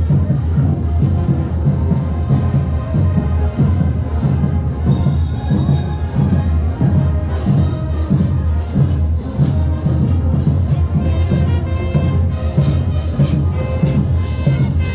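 Live parade band music with a heavy, pulsing bass drum. Near the end, higher wind-instrument notes come through more clearly.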